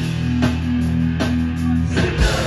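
Live rock band playing loud through a club PA, heard from the crowd: electric guitars holding ringing chords, punctuated by a few heavy drum hits.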